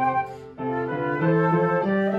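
Two concert flutes and an upright piano playing a Christmas carol arrangement in sustained, melodic notes, with a brief break between phrases about half a second in before all three come back in.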